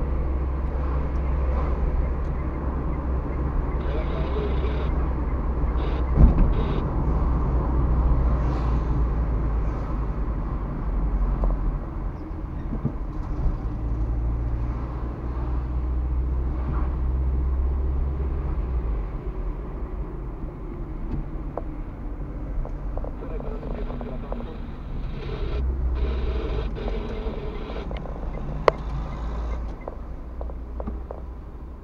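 Car driving, heard from inside the cabin: a steady low rumble of engine and road noise, with a sharp thump about six seconds in. The deep rumble eases for several seconds past the middle, returns near the end, and a short click comes just before the end.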